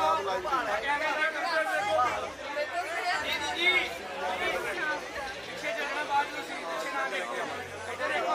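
A group of people chattering, several voices talking over one another.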